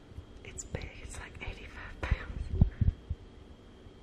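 A woman whispering softly to herself, unvoiced breathy bursts without a clear voice pitch. A few short low thumps come about two to three seconds in.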